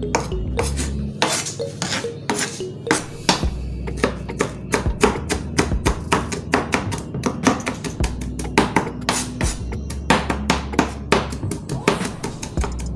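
Kitchen knife chopping peppers finely on a plastic cutting board. The chopping goes as quick, uneven knocks that come faster, several a second, from about four seconds in.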